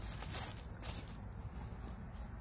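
Faint rustling of a plastic drop sheet and light clicks as a bowl is handled and moved. There are a few crinkles in the first second, then only a low steady background.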